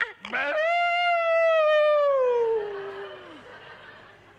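One long drawn-out vocal call from a performer: it rises quickly in pitch, holds, then slowly slides down and fades out about three and a half seconds in.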